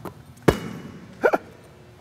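A basketball bouncing once on a hardwood gym floor, one sharp thud about half a second in. A little later come two short, quick vocal sounds from a person.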